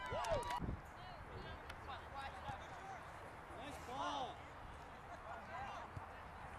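Spectators' voices shouting and cheering in short bursts, loudest right at the start, with another shout about four seconds in, over steady open-air background noise. A few sharp knocks come near the start.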